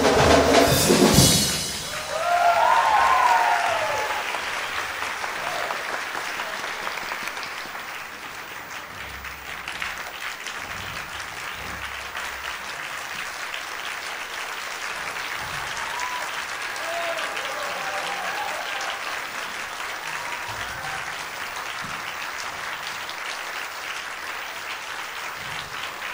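A live band's final loud chord with drums cuts off about a second in, followed by an audience applauding, with whoops and cheers over the clapping. The applause dies down over the next several seconds and then carries on steadily.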